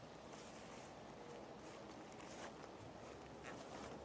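Near silence: faint, steady outdoor background noise.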